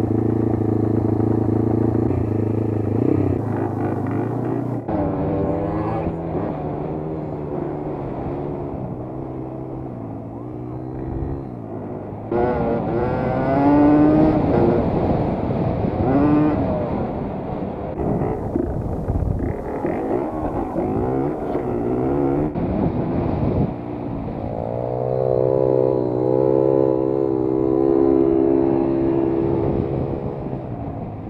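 Dirt bike engine under way on a dirt track, revving up and dropping back again and again as it is ridden through the gears, then held at high revs for the last several seconds.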